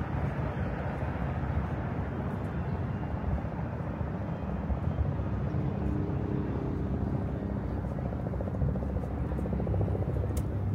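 Steady low engine drone with a few held low tones and a faint fast flutter in the middle.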